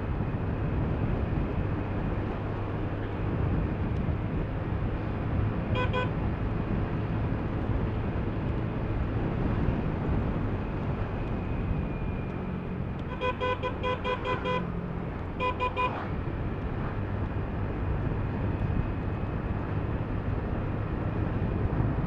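Motor scooter riding along, its engine and the wind making a steady rumble. A horn beeps once about six seconds in, then gives a quick run of short beeps in the middle and one more brief beep soon after.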